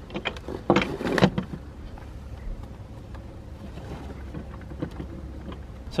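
Rope being handled on deck: a few short rustles and knocks in the first second and a half, then only a steady low hum.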